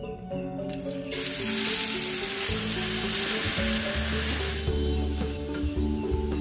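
Ground spice paste dropped into hot oil in a wok, sizzling loudly from about a second in, the sizzle dying down near the end as it is stirred.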